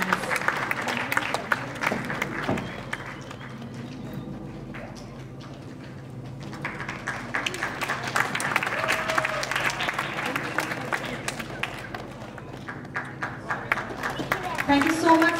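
Audience applauding. The clapping is thickest at first, thins out a few seconds in, then picks up again and carries on.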